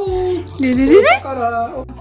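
A baby fussing: a wavering whimper that dips and then rises sharply in pitch about halfway through, over background music with a steady beat.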